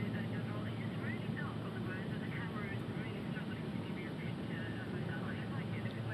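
Steady drone of an aircraft cabin in flight, with faint voices in the background.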